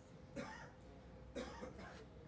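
A man coughing twice, two short coughs about a second apart.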